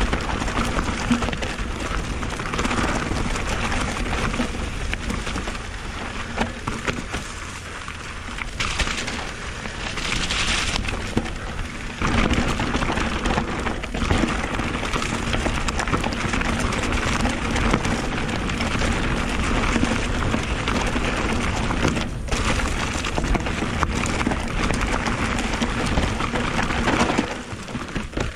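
Merida electric mountain bike descending a rough, rocky trail: tyres crunching over dirt, stones and pine needles, with continuous rattling and clattering from the bike.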